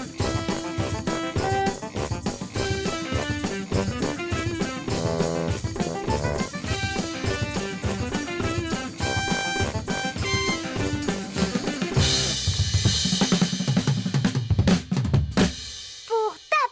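A small band playing an upbeat piece together: a drum kit keeping a steady beat under saxophone, electric guitar, a big brass horn and hand percussion. In the last few seconds it goes into a drum roll with cymbals, then stops just before the end.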